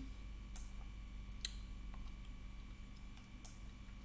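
A low steady hum with three faint, short clicks: one about half a second in, one about a second and a half in, and one near the end.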